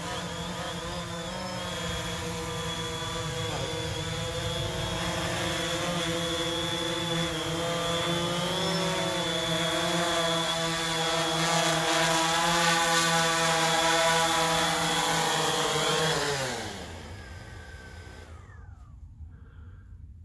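DJI Phantom 3 Standard quadcopter flying with its stock plastic propellers, the motors and props giving a steady whine of several tones that grows slightly louder. About sixteen seconds in, the pitch drops and the whine dies away as the motors spin down on landing.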